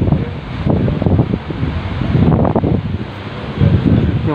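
Wind buffeting the phone's microphone, an uneven low rumble that rises and falls in gusts.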